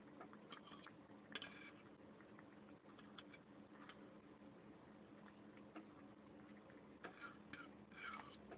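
Faint, irregular ticks and clicks of a cat eating, licking and chewing food off a plate and a metal fork, with a steady low hum behind.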